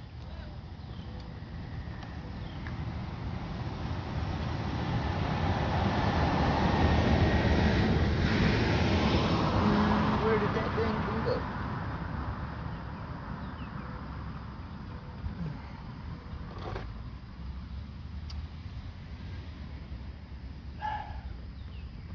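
A vehicle passing by: road noise swells over several seconds, peaks about eight seconds in, and fades away. A single light knock comes later.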